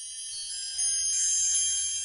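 Shimmering chime sound effect: many high bell-like tones ringing together, getting louder about a second in.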